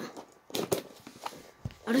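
Light scratches, clicks and a soft knock of a cardboard box being handled and picked at while it is being worked open, without success.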